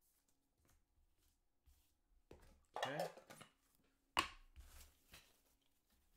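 Handling noises at a table: light scattered clicks and rustles, with one sharp knock about four seconds in as something is set down.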